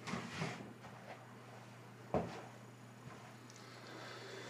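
Handling noises of someone rummaging for something: a brief rustle at the start, then a single sharp knock about two seconds in, over a faint steady low hum.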